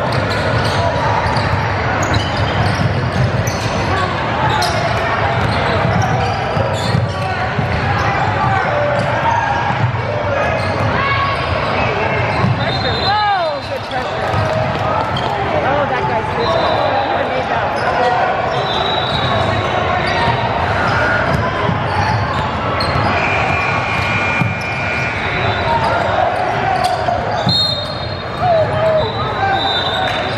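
Basketball bouncing and dribbling on a hardwood court in a large, echoing gym, with steady chatter and calls from players and spectators.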